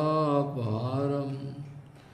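A man's voice chanting a Sanskrit prayer verse, holding the last note of a line. The note dips in pitch and fades out about a second and a half in.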